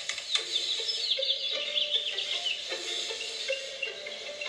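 Animated-film soundtrack music played through a phone speaker: short held notes step up and down, and a quick run of high chirping sounds comes in from about half a second to two seconds in.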